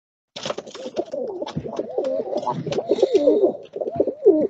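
Bird calls with a quickly wavering pitch, starting suddenly about a third of a second in and running on without a break, with clicks and hiss mixed in.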